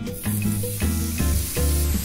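Lean beef patties sizzling steadily in a hot nonstick frying pan, under background music.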